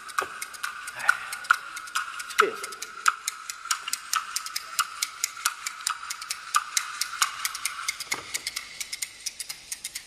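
Hand-held clapper boards (kuaiban) clacking a quick, steady rhythm of about six to eight clicks a second, the instrumental lead-in to a rhythmic chanted shulaibao piece.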